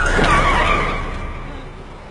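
SUV tyres squealing as the vehicle brakes hard to a stop: a wavering screech with a sharp start that fades away over about a second and a half.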